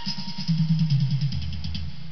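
A pop song playing from CD through the Webcor console stereo's speakers: a sparse stretch of bass and drums, the bass line stepping down in pitch under quick light ticks.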